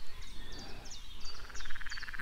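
Animal calls in the background: short high chirps repeated several times a second, joined in the second half by a rapid, evenly pulsing trill.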